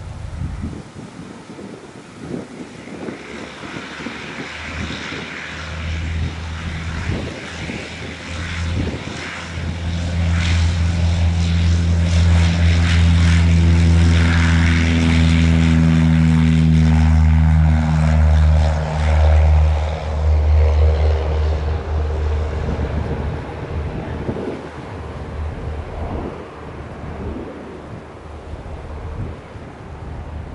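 Cessna 172 light aircraft's piston engine and propeller at full takeoff power during a grass-runway takeoff. It grows louder as the plane rolls toward and past, drops in pitch as it goes by about two-thirds of the way in, then fades as the plane climbs away.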